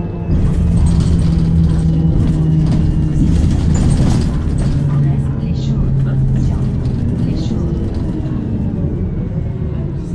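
Bus engine and road noise heard from inside the moving bus's cabin: a steady low drone with a held engine note that steps down a little about halfway through.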